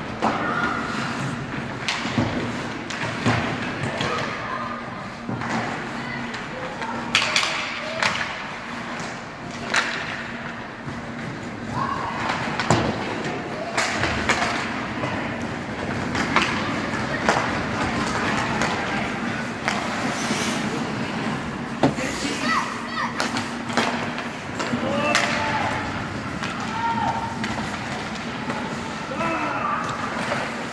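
Ice hockey play heard from rinkside: scattered sharp knocks and thuds of sticks, puck and players against the ice and boards. Spectators' voices call out and chatter in between, over a faint steady low hum.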